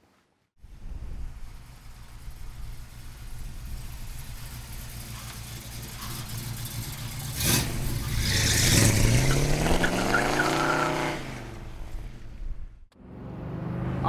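Ford Racing 302 V8 crate engine in a 1966 Ford Mustang convertible, running as the car drives. Its low rumble builds, then the engine note rises in pitch as it accelerates a little past the middle, and dies away near the end.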